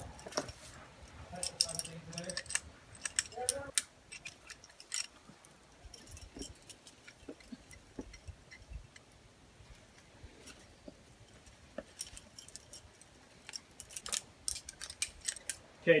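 Metal climbing gear, carabiners and quickdraws, clinking in short irregular clicks while a climber moves up rock, with faint distant voices in the first few seconds.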